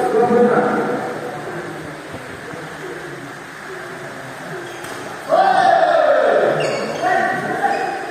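Voices echoing in a large sports hall; about five seconds in, a loud, drawn-out shout whose pitch falls, followed by a shorter call.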